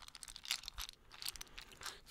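Fingers tapping and scratching quickly on a small object held against a foam-covered microphone, making quick irregular clicks and crackles.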